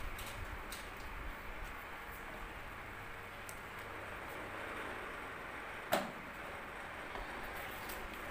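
Faint ticks and scratches of a felt-tip pen drawing on folded origami paper over low room noise, with one sharp click about six seconds in.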